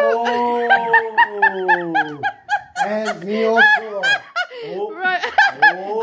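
A woman laughing hard: a long drawn-out high laugh, then a run of short laughing bursts, and another long one near the end.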